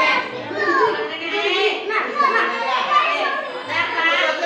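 A crowd of young children all talking and calling out at once, their high voices overlapping in a lively, continuous chatter.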